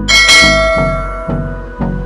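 A bright bell-chime sound effect from a notification-bell animation rings about a tenth of a second in and fades over about a second. It sounds over background pop music with a steady beat.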